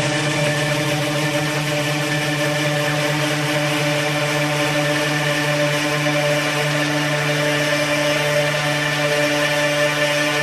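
Sustained synthesizer drone in an acid techno track's breakdown, holding one low pitch with a rich stack of overtones and no kick drum.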